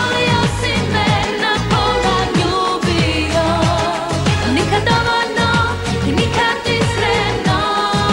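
Croatian-language pop song with a woman's lead vocal over a steady, driving drum beat.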